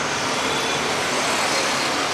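Steady street traffic noise, an even continuous rush with no single vehicle or event standing out.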